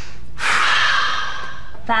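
A person drawing one long, deep breath in, starting about half a second in and lasting about a second and a half.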